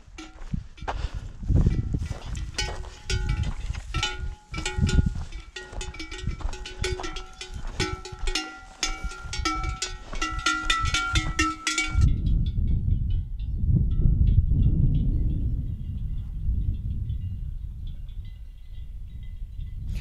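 Cowbells on grazing cows clanking irregularly, many overlapping metallic rings. They stop abruptly about twelve seconds in, leaving only a low rumble.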